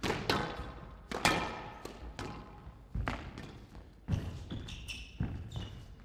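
Squash rally: the ball cracks off rackets and the walls of a glass court about once a second, with short squeaks from shoes on the court floor.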